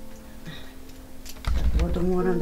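Light plastic clicks of hands working an infusion pump's tubing and buttons, over soft background music. About one and a half seconds in comes a low thump, and the music grows louder.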